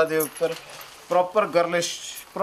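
A man's voice talking in short phrases, with light crinkly rustling from stiff organza fabric being handled.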